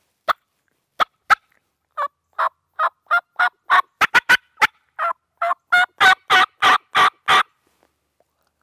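Hand-operated turkey call demonstrating hen talk: three short clucks, then a run of about twenty yelps that come faster and grow louder toward the end. It is an opening call meant to draw a gobble and test how excited the tom is.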